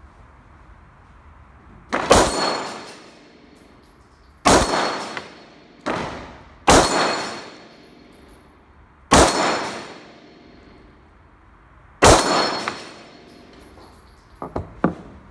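CZ SP-01 Shadow pistol firing at steel gong targets, six sharp reports spaced two to three seconds apart, the fourth quieter than the rest. Each report is followed by the ring of the struck steel plate as it is knocked down.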